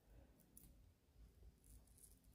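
Near silence, with a few faint clicks and scrapes of a metal cuticle pusher prying under a gel nail to lift it off.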